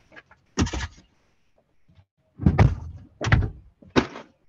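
A series of heavy thumps and knocks in a small room, four in all, the later three coming close together in the second half.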